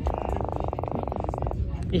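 An Atlantic croaker held in the hand croaking once when stroked: a rapid buzzing run of pulses lasting about a second and a half. The fish makes it by drumming muscles against its swim bladder.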